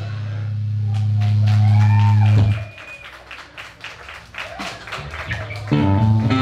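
Amplified electric guitar notes left ringing after a band stops playing: a low held note that swells for about two and a half seconds, with a faint whistling feedback tone gliding above it, then is muted. After a quieter stretch with scattered faint clicks, a guitar chord is struck again near the end.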